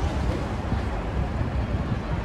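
Emergency vehicles' engines idling, a steady low rumble.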